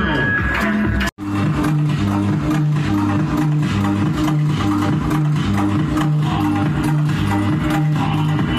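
Loud music with a repeating bass line, played through car audio sound systems. About a second in it cuts out abruptly, then resumes as a different track.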